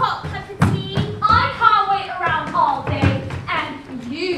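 Actors' raised, high-pitched voices with several dull thuds of feet on a wooden stage floor.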